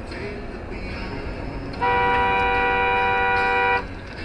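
A car horn, sounded in one long honk of about two seconds that starts a little under two seconds in and cuts off sharply. Under it is the steady rumble of road noise inside a moving car.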